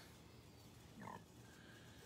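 Near silence: room tone, with one brief faint sound about a second in.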